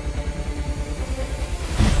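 A Toyota RAV4 SUV driving along a road, its engine and tyre noise steady, then rising into a whoosh near the end as it comes close.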